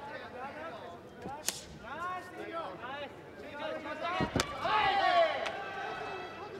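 Kickboxing strikes landing: two sharp smacks, about a second and a half in and again past four seconds, amid shouting voices from ringside, with the loudest shout just after the second smack.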